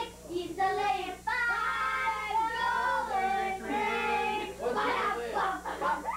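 A group of voices, children among them, singing a song together, holding long notes before quicker words near the end.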